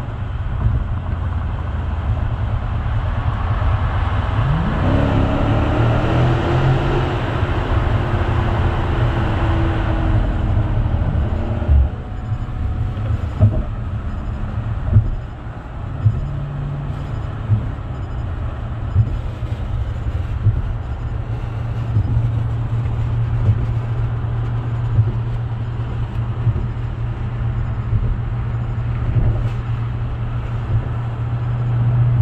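Dodge Scat Pack's 392 Hemi V8, heard from inside the cabin, revving up with rising pitch for several seconds under acceleration in a lower gear, then easing off near the middle to a steady cruising drone. Short thumps come every second or two after that.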